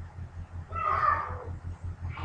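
A single short, pitched call lasting about half a second near the middle, over a steady low hum.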